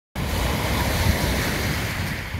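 Small waves breaking and washing up over a pebble and sand shore, in a steady wash of surf, with wind buffeting the microphone in a low rumble.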